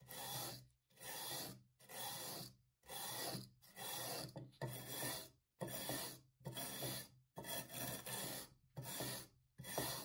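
Hand wire brush scrubbing flaking old paint off a paper cutter's metal base plate in back-and-forth strokes, about a dozen rasping strokes with short pauses between them.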